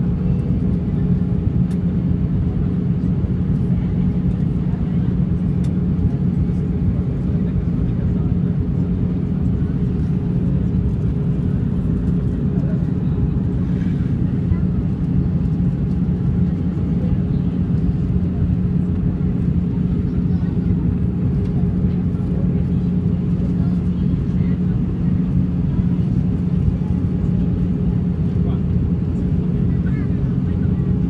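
Steady cabin noise of an Airbus A319 in flight, heard from a window seat over the wing. The engines and airflow make a deep even rumble, with a constant low hum running through it.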